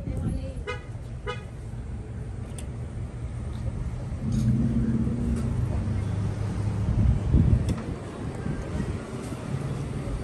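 A car driving past, its engine rumble swelling about four seconds in, loudest around seven seconds, then fading.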